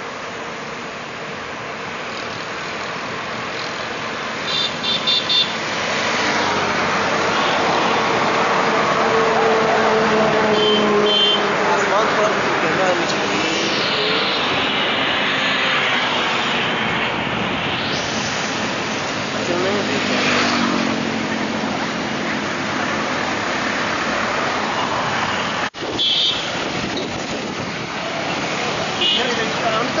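Road traffic passing on a wet expressway: cars and trucks go by with a steady hiss of tyres on the wet surface and the hum of their engines. It swells to its loudest around ten seconds in as vehicles pass close.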